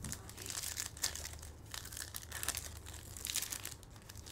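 Foil wrapper of a 2023 Bowman Chrome Hobby baseball card pack crinkling in the hands as it is handled and opened: an irregular run of small crackles.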